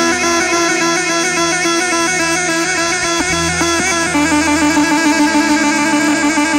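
Yarghoul, a cane double-pipe folk reed instrument, playing a fast, ornamented dabke melody over its own steady drone, with a low bass line underneath.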